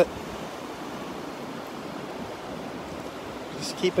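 Steady, even wash of gentle Gulf of Mexico surf and breeze on an open beach, with no distinct breaking waves or other events; a voice starts again near the end.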